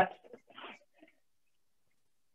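The tail of a spoken word, then a few faint, short voice-like sounds in the first second, then near silence.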